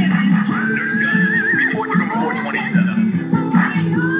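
Upbeat cartoon theme song with singing, including a long wavering held note about a second in.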